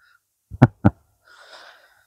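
A man's brief chuckle: two short, breathy bursts of laughter, followed by a soft exhale.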